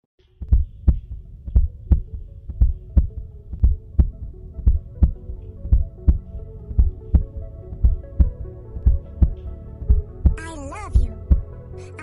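Heartbeat sound effect on the soundtrack: paired 'lub-dub' thumps about once a second, over a steady held synth drone. A high wavering tone comes in near the end.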